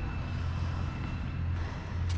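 A low, steady engine drone.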